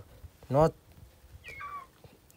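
A puppy gives one short, high whine that falls in pitch, about one and a half seconds in. It follows a brief loud spoken word.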